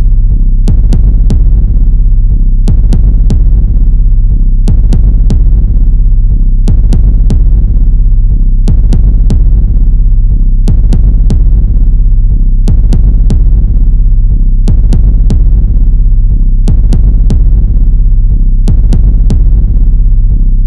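Background music: a droning low synth bed with a ticking percussion pattern that repeats about every two seconds.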